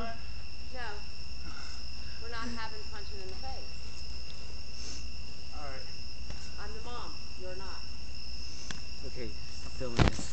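Crickets chirring in one steady, unbroken high trill, with faint voices talking now and then and a low steady rumble underneath.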